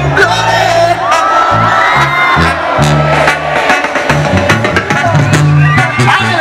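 Mexican banda (brass band) playing live: a tuba bass line steps through sustained low notes under a brass and clarinet melody, with drums keeping the beat.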